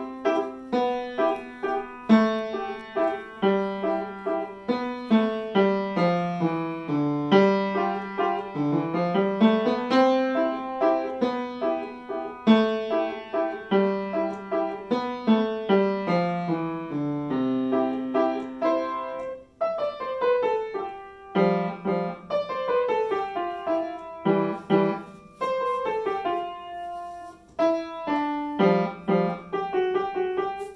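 Upright acoustic piano played by a child: a recital piece in steady single notes, with lower notes sounding under a higher line, and a short break in the playing about twenty seconds in.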